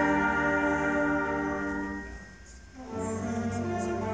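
Student concert band of woodwinds and brass playing sustained chords that die away about two seconds in; after a short pause the band comes back in on a new chord with a strong low end.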